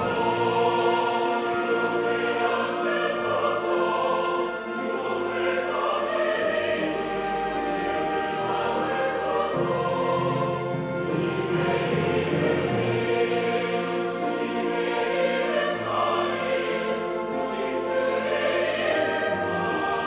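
Large mixed church choir singing a worship anthem in Korean with orchestral accompaniment, violins among it, the music continuous throughout.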